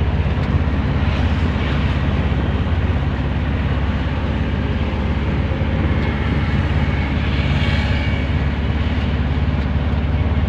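Engine and road noise heard from inside the cabin of a moving vehicle: a steady low drone with rushing noise over it.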